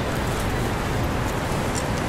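Busy city street ambience: a steady wash of traffic noise with faint voices of passers-by mixed in.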